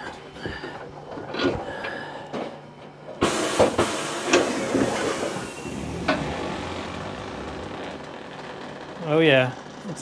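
Triumph NTB-550 tire changer demounting a large mud tire: a few clanks of the bar and tire first, then about three seconds in the machine starts up and runs with a steady scraping noise as the bead is worked over the demount head. A short voice comes near the end.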